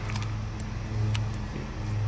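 A motor engine running steadily with an even low hum, with a few light clicks from film being loaded into an open 35 mm film camera.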